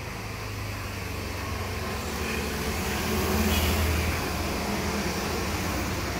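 A motor vehicle's engine running with a steady low hum that grows louder to a peak about three and a half seconds in, then eases a little.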